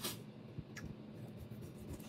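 Knife and fork cutting food on a plate: a sharp scrape of the cutlery right at the start, then a few fainter clicks and scrapes.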